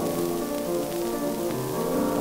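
Grand piano playing on alone between the sung phrases, a run of successive notes with a deeper note entering near the end, heard through the steady hiss and faint crackle of a c. 1928 gramophone record.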